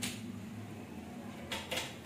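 A marker pen being set down on a whiteboard's tray: two short clatters about one and a half seconds in, over a steady low hum.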